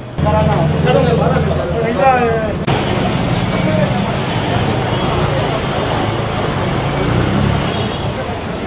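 Busy shop-street sound: people's voices talking close by, over a steady low rumble of road traffic and background noise. The sound comes in suddenly just after the start, and the voices are clearest in the first two and a half seconds.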